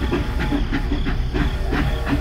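Toy steam train running along its plastic track: a steady low motor hum with a rhythmic chuffing, about three beats a second.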